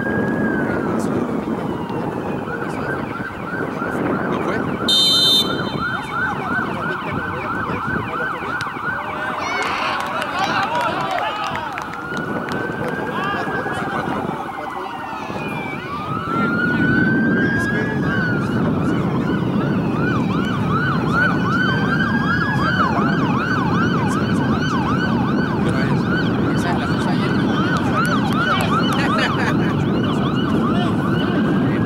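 Emergency-vehicle siren sounding throughout, switching between a slow rising-and-falling wail and a fast repeating yelp, over low background noise. A short, sharp whistle blast about five seconds in, which is when a penalty kick is being set up.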